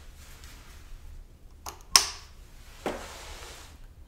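Motorcycle handlebar turn-signal switch being flicked over: a sharp click about two seconds in, with a softer tick just before it, then a duller knock and a brief rustle about a second later.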